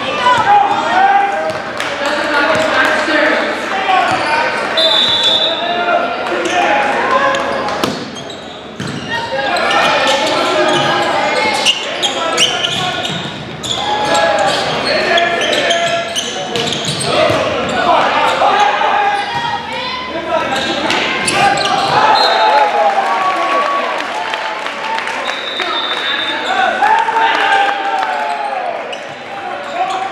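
Volleyball match in a large, echoing gymnasium: many voices talking and calling out throughout, with occasional sharp knocks of the volleyball being struck and hitting the hardwood floor.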